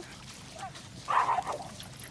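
A small dog barks briefly about a second in.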